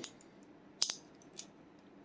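A sharp metallic double click a little under a second in, then a faint tick, from the guide rod and recoil spring of a Sig Sauer P238 being worked by hand into the pistol's slide.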